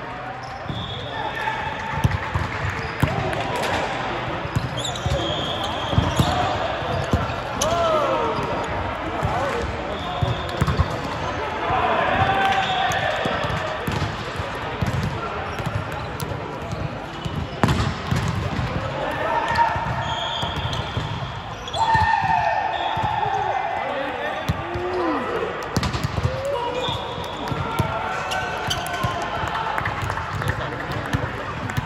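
Volleyballs being hit and bouncing on an indoor sports court, a sharp smack every second or two, with short squeaks of sneakers on the court floor and the chatter of many players.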